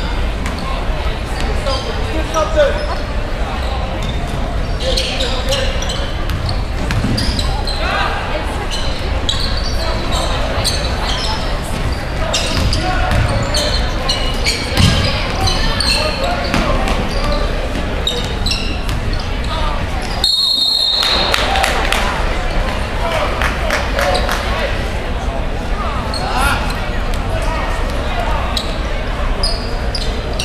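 Indoor basketball game in a gym: the ball dribbling and sneakers squeaking on the hardwood over steady crowd chatter in a large, echoing hall. About twenty seconds in, a referee's whistle blows once, stopping play.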